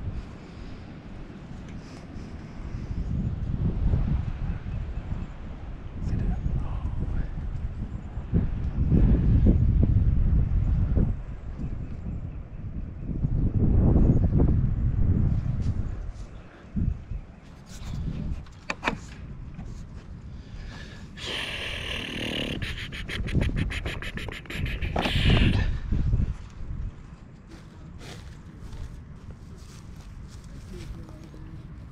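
Wind buffeting the microphone in gusty surges of low rumble. Near the end there is a few-second run of rapid scratchy clicks.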